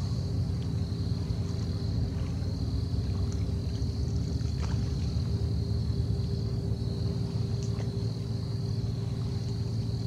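A steady low hum with a few constant tones in it, and a faint, steady high-pitched drone above it.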